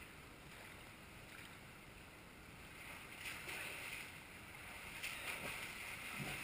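A swimmer's arm strokes splashing in a pool. The splashing starts about halfway in and grows louder as the swimmer gets closer, over a faint steady hiss.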